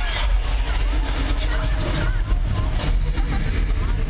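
Loud surround soundtrack of a 3-D theme-park ride, heard from the tram: a heavy, constant low rumble with wavering cries and voices over it.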